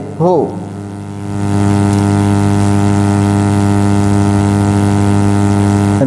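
Steady electrical mains hum: a low buzzing hum with many overtones. It swells louder about a second and a half in and then holds level.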